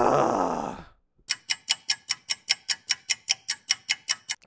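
A long, loud groaning sigh, then a fast clock-ticking sound effect at about five ticks a second, marking a jump forward in time.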